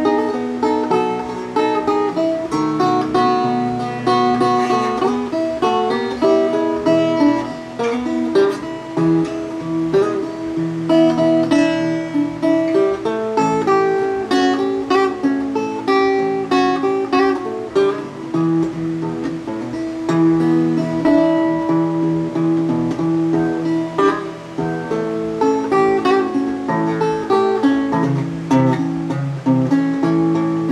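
Solo acoustic guitar playing a downhome blues in E, with picked notes and strums over a moving bass line.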